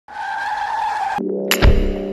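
Car tyres screeching in a steady high squeal for about a second, cutting off abruptly. Music then starts with a sharp hit and a deep boom over sustained low notes.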